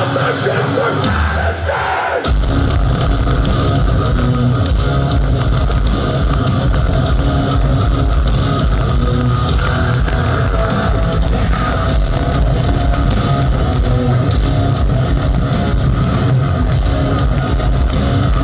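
Metal band playing live through a large venue PA, recorded from the crowd: distorted electric guitar carries a lighter opening, then drums and bass come in about two seconds in and the full band plays on at a steady, heavy level.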